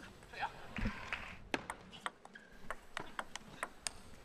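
Table tennis rally: the plastic ball clicking sharply off the bats and the table in quick alternation. A fast run of a dozen or more clicks starts about a second and a half in.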